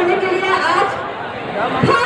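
A crowd of people talking, with voices overlapping, easing off a little about a second in before picking up again.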